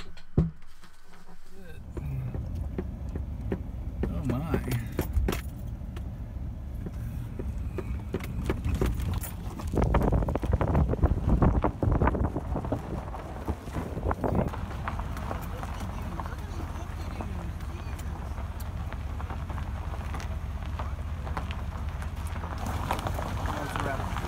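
A truck driving slowly in four-wheel drive over a rough, rocky dirt track, heard from inside: a steady low engine and road rumble with scattered knocks and rattles from the bumps. It starts about two seconds in and is loudest and roughest around ten to twelve seconds in.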